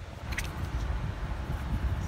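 Low, uneven rumble of handling noise as a cardboard eyeshadow palette is moved about in front of the microphone, with a single sharp click about half a second in.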